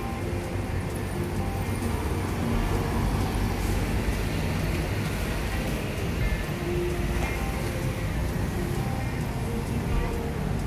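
City street ambience: road traffic and the chatter of passers-by, with music playing.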